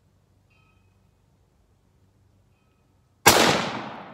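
A single .30-06 rifle shot from a Rock Island Arsenal M1903 Springfield bolt-action rifle about three seconds in, its report dying away in a long, slowly fading echo.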